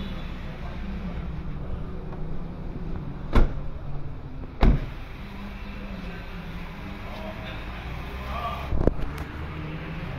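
A steady low hum with two sharp knocks about a second and a half apart, a third and halfway through, and a smaller knock near the end.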